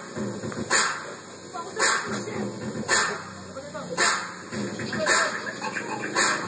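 Dance-routine music played over a sound system, with a heavy hit roughly once a second. Between the hits come barking- and whimpering-like dog sounds.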